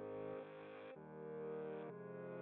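Quiet background music of low, sustained chords, moving to a new chord about a second in and again near the end.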